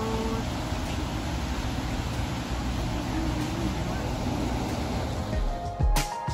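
Steady outdoor rumble and hiss, with a few low thumps near the end as music begins.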